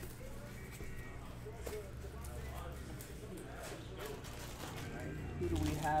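Light knocks and rubbing from a large cardboard jersey box being handled, under faint speech and a steady low hum. A louder voice comes in at the end.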